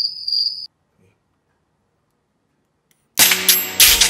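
A cricket-chirp sound effect, a steady high trill, cuts off abruptly under a second in. After about two and a half seconds of dead silence, music with sharp percussive hits starts near the end.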